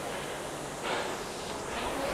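A Concept2 RowERG air rowing machine being rowed at an easy 20 strokes per minute, heard faintly: a soft whoosh about a second in over a low steady background.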